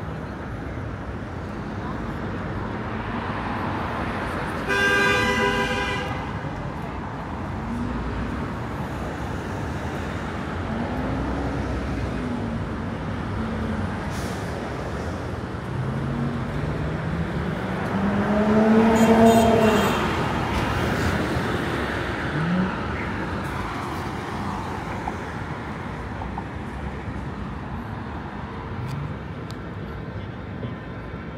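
Downtown street traffic noise with a car horn honking once, for about a second, about five seconds in, and passers-by talking; the traffic swells loudest around nineteen seconds in.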